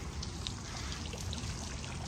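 Water from a courtyard fountain trickling steadily.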